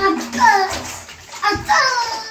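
A high-pitched child's voice talking in short bursts.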